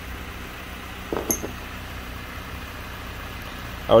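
Toyota Corolla 1.8 inline-four engine idling steadily, now that its swapped evaporative and intake vacuum hoses are back in place and the unmetered air leak is closed. A brief short sound with a faint click comes about a second in.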